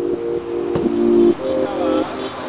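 Background music with held, slowly changing chords, and a single sharp thud about three quarters of a second in that fits a car door being shut.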